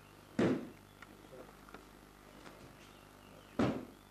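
Two heavy thuds of bodies landing on a mat, about three seconds apart, with a few faint ticks between them.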